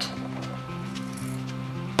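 Background music with long held low notes, over faint snips of scissors cutting through fabric-covered card.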